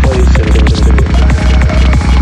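Hi-tech psytrance at 190 bpm: a fast, steady kick drum about three beats a second under a rolling bassline, with synth lines gliding down in pitch.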